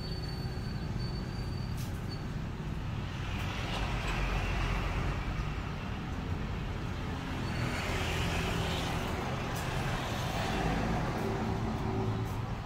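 Road traffic: a steady low rumble with two vehicles passing, each swelling and fading, about four and eight seconds in.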